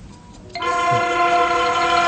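A loud, steady horn-like chord of several pitches starts abruptly about half a second in and is held.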